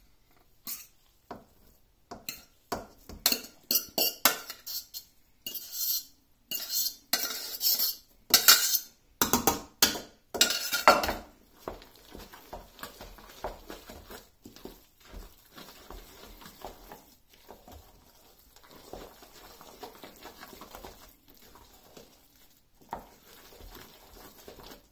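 Metal kitchen utensils knocking, clinking and scraping against a pot in quick, loud strokes for the first eleven seconds or so, then quieter scattered clinks.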